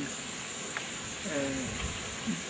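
Steady background chorus of insects, with a short hesitant voice sound about a second and a half in.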